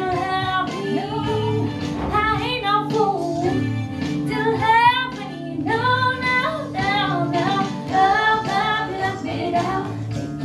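A teenage girl singing a country song into a handheld microphone over instrumental accompaniment.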